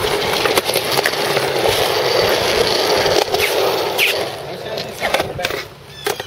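Skateboard on concrete: a steady, rough rolling and grinding noise of urethane wheels and trucks on the park's concrete for about four seconds, then it drops away. Several sharp clacks of the board striking concrete come through it, a pair of them about five seconds in.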